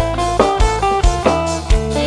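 Live band playing an instrumental passage through a PA system: a plucked guitar melody over bass and a drum kit's regular kick-drum beat.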